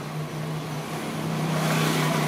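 A car approaching along the street, its engine and tyre noise growing steadily louder over a low steady hum.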